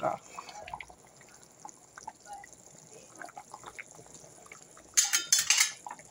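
Thick callaloo boiling in a pot on the stove, with quiet, scattered bubbling pops. About five seconds in, a brief loud scraping noise.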